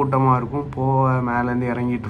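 Only speech: a man talking in Tamil, some syllables drawn out at a level pitch.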